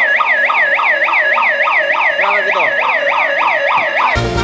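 Electronic emergency-vehicle siren in fast yelp mode: a steady, loud wail sweeping down and back up in pitch about four times a second.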